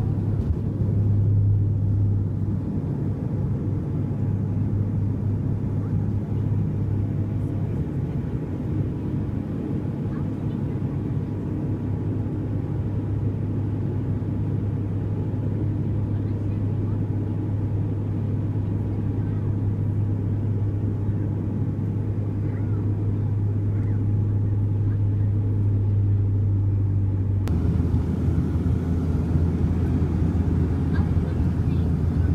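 Cabin noise of a Bombardier Q400 turboprop: the steady low drone of its engines and propellers, heard from a seat beside the wing. The drone changes abruptly near the end.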